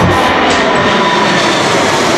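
Jet airliner passing low overhead on its climb, its engines loud and steady: a dense rushing noise with a faint steady whine.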